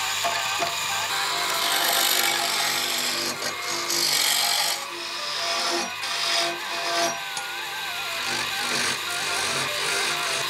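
Electric wood lathe turning a wooden spindle while a hand-held steel chisel cuts into it: a rasping scrape in strokes, loudest about two and four seconds in.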